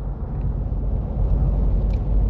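Steady low background rumble with a light hiss, and a few faint ticks.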